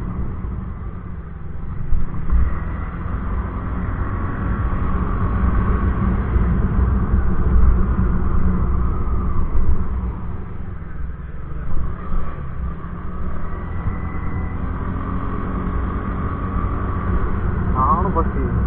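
A motor scooter ridden at a steady speed of about 30 km/h: a continuous low rumble of the small engine and wind buffeting the camera's microphone, with faint whining tones that come and go.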